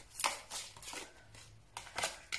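Tarot cards being handled: several short, quiet rustles and taps as a card is drawn from the deck and slid onto a wooden table.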